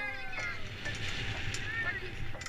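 A person on a swing squealing in a high voice, with rising-and-falling cries near the start and again near the end, over background music whose held notes stop about half a second in.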